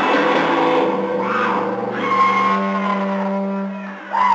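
Final chord of a live rock song ringing out on electric guitar and bass, held notes sustaining and fading gradually as the song ends.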